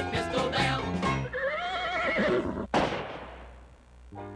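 A band's music ends about a second in. A horse whinny follows, its pitch wavering up and down for about a second. Then a single sharp crash rings and fades away.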